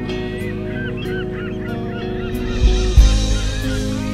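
A flurry of short bird calls, each rising and falling in pitch, over steady background music, with two brief low thumps about three seconds in.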